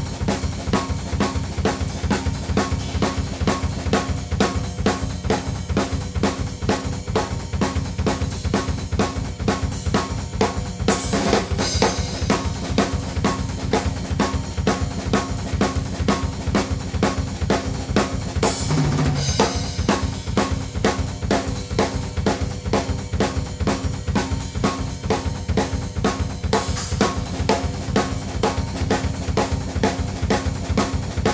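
Drum kit playing a fast double-bass-drum shuffle: both bass drums in a steady rapid run of strokes, a jazz ride pattern on the cymbal and the snare on two and four, with a single snare ghost note taken in and out of the groove. Cymbal crashes ring out three times, about a third of the way in, past halfway and near the end.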